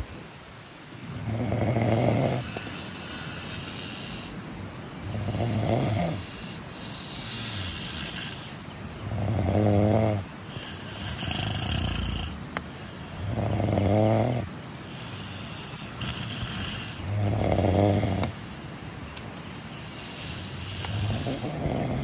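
Two people snoring in turn: about every four seconds a loud, deep snore, with a softer, higher snore from the second sleeper in the gaps between.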